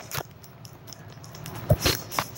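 Handling noise as things are moved about: a soft knock just after the start, then a louder thump and a brief rustle near the end.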